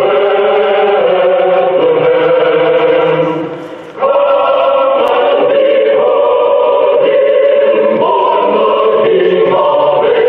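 Choir singing slowly in long held chords, with a brief break between phrases about three and a half seconds in.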